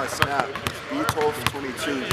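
A basketball bouncing on a hardwood court: about five sharp thuds roughly half a second apart, with voices talking underneath.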